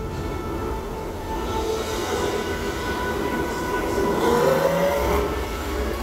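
Steady low rumble of a water-ride boat moving along its channel through an enclosed tunnel, with a faint rising tone about four seconds in.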